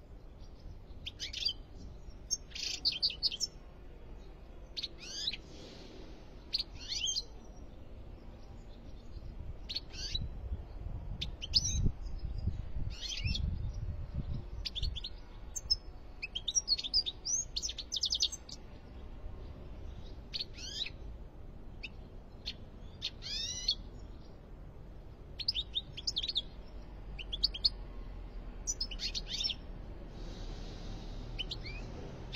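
European goldfinch giving short, sharp chirping calls and brief twittering phrases, one burst every second or two, several with quick downward-sweeping notes. A low rumble comes through in the middle.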